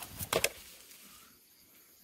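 A quick cluster of short clicks and rustles about a third of a second in, then only faint outdoor background.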